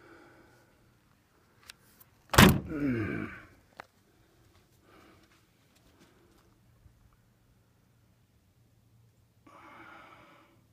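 Steel cab door of a Volvo White truck slammed shut about two and a half seconds in: one sharp bang with a brief ringing, rattling tail, and a few small latch clicks around it.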